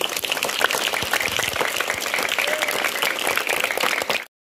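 Applause from a seated crowd of schoolchildren and women: many hands clapping densely and steadily.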